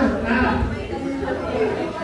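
Several people talking at once: party chatter.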